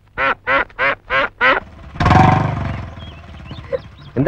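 A chicken squawking five times in quick succession, short sharp calls about three a second. About two seconds in, a louder rough burst of noise follows and fades away over about a second.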